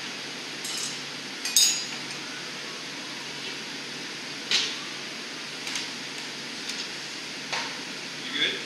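Several sharp metal clinks and knocks of glassblowing tools and steel blowpipes against the bench's steel rails, the loudest, with a brief high ring, about one and a half seconds in. A steady rush of the hot shop's furnaces and fans runs underneath.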